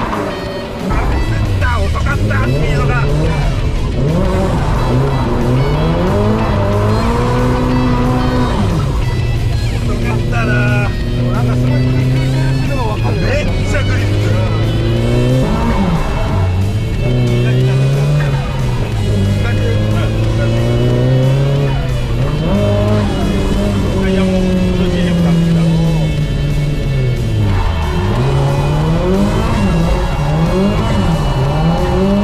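Drift car's engine revving hard, its pitch climbing and dropping every few seconds, with tyres squealing and skidding as the car slides through the corners.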